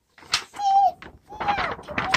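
A voice making two short hummed sounds, the first held nearly level and the second rising and falling, with a brief click just before the first.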